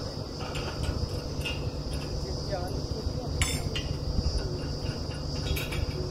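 Steady low rumble of the truck-mounted drilling rig's engine idling, under a constant high-pitched buzz. A few sharp metallic clanks come from work at the bore casing, the loudest about three and a half seconds in and another just before the end.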